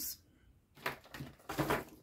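Cardstock being handled and slid on a tabletop: two short papery rustles, about a second in and again a little later.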